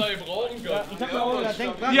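Men talking, with indistinct background chatter; speech only, no other clear sound.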